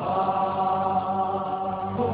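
Music: chant-like choral voices holding long, sustained notes.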